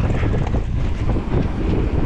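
Wind buffeting the helmet-camera microphone over the rolling of mountain bike tyres on a wet dirt trail, with a steady stream of small knocks and rattles from the bike over the bumps.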